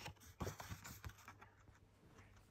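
Faint rustling and a few light clicks of a paper transfer sheet being handled and positioned against scissors.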